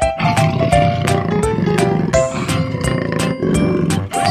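A jaguar growling, over children's background music with a steady beat.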